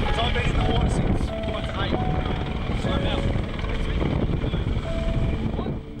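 Steady low rumbling noise of motor and wind on board an inflatable rescue boat in rough sea, with short snatches of voices.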